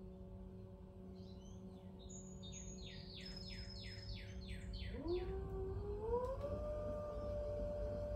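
Electric pottery wheel motor humming steadily, then rising in pitch in a couple of steps about five seconds in as the wheel is sped up, and holding at the higher pitch. Before that, a bird sings a quick run of about nine down-slurred whistled notes.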